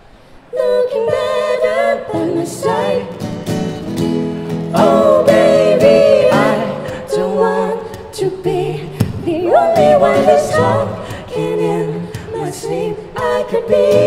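Live acoustic performance: a female voice singing a slow song over acoustic guitar, starting about half a second in after a brief pause.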